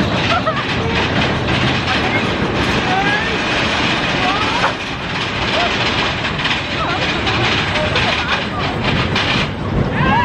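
Big Thunder Mountain mine-train roller coaster running along its track, a steady loud rattle and rumble of the train, with riders' voices and short cries now and then.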